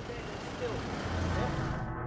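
Street ambience of road traffic: a steady noisy hiss with a low rumble from passing vehicles, which cuts off abruptly near the end.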